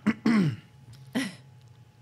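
A man's short throat-clearing vocal sounds: two quick falling-pitch grunts at the start, then one more brief one about a second in.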